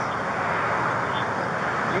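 Steady noise of road traffic going by.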